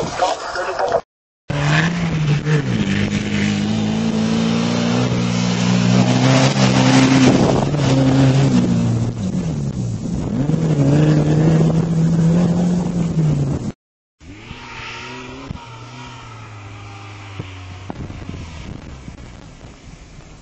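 Off-road rally-raid SUV engine revving hard and loud, its pitch climbing, holding and dropping twice. After a brief cut, the engine is heard fainter and steadier, with wind on the microphone.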